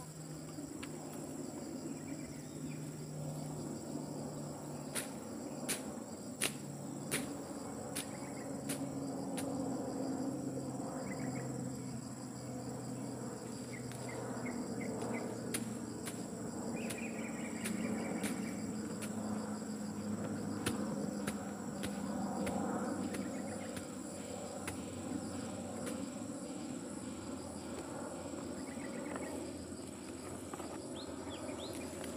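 Fuel gurgling as it is poured from a plastic jerrycan into a backpack brush cutter's tank, with a steady chirring of insects behind it. A few sharp clicks come about five to nine seconds in.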